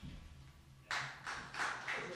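Audio of a TV show's break bumper: faint for about a second, then a run of short noisy hits about three a second.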